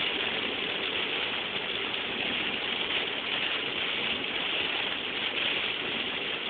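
Heavy rain on a moving car and its tyres on the wet, water-covered road, heard from inside the car as a steady rushing noise.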